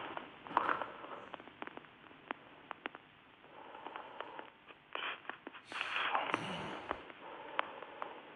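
Faint handling noise over a telephone line: scattered small clicks and rustles with a couple of brief, muffled murmurs, as the caller opens his phone to read a message.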